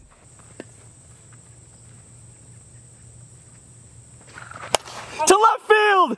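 Quiet field ambience with a faint steady high whine, broken about three-quarters of the way in by a single sharp crack of a plastic wiffle ball bat hitting the ball for a long fly ball, followed at once by excited commentary.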